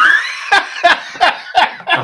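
Hearty male laughter, loud: a rising high-pitched squeal, then a run of short bursts of laughter at about three a second.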